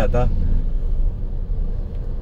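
Low, steady rumble of a new Tata diesel car's engine and road noise, heard from inside the cabin in stop-and-go traffic.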